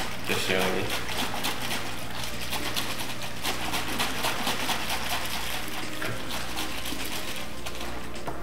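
Vegetable oil and methoxide sloshing in a plastic bottle, shaken hard by hand in a rapid, steady rhythm to mix them and start the biodiesel reaction.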